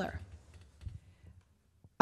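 A spoken name ending at the start, then quiet room tone with a few faint clicks in the pause before the next speaker.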